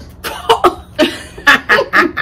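A person coughing: a run of about six short, harsh coughs in quick clusters.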